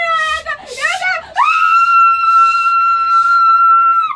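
A high-pitched voice wails in short, wavering cries, then about a second and a half in lets out one long scream held at a steady pitch, which breaks off near the end.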